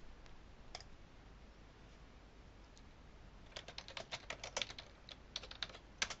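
Faint computer keyboard typing: a single click near the start, then two quick runs of key clicks in the second half.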